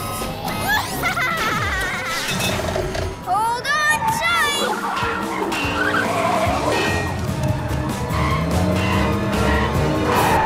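Animated cartoon chase soundtrack: action music over the Gekko-mobile's engine and tyre-skid sound effects.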